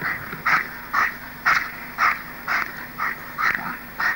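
A working dog barking in a steady rhythm, about two raspy barks a second.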